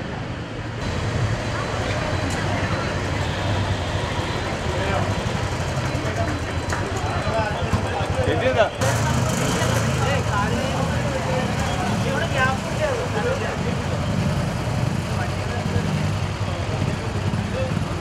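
Several motorcycle engines idling together at a start line, a steady low rumble, with people talking over it.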